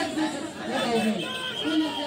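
A large crowd of people talking and calling out over one another, with some raised voices held for about half a second at a time.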